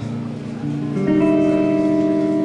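Guitar played live: held notes ring and fade a little, then a new, louder chord is struck about a second in and rings on.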